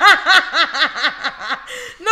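A person laughing in a rapid run of short pitched pulses, about five a second, that taper off near the end.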